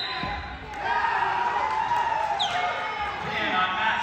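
Spectators' voices in a gymnasium: several people calling out and talking over one another, with a dull thump near the start.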